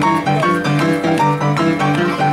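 Yamaha upright piano played vigorously with both hands: a steady, repeating bass figure in the low notes, with quicker higher notes over it.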